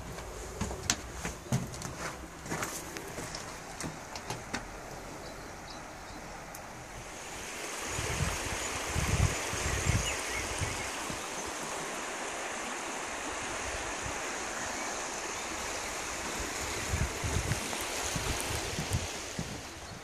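Footsteps clicking and knocking in a rock tunnel, then from about seven seconds in the steady rush of a creek flowing below a suspension bridge, with a few low thumps.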